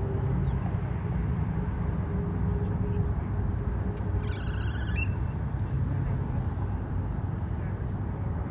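Parking-lot traffic: a steady low engine and tyre rumble as a car drives slowly past. A brief high chirp sounds about halfway through.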